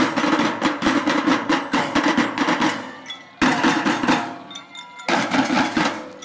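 A children's marching drum band playing snare and bass drums: loud drumming in short phrases broken by brief pauses, about three seconds in and again about a second later.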